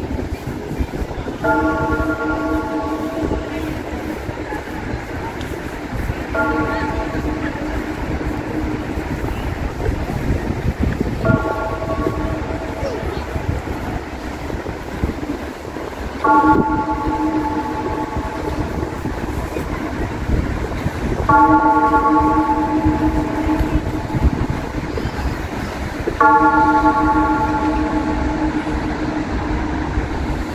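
A horn sounding six times in blasts of one to two seconds, about five seconds apart, over a steady background of outdoor noise.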